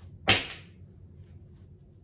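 A single sharp snap of tarot cards being handled, a card or deck slapped down on the table, about a quarter second in.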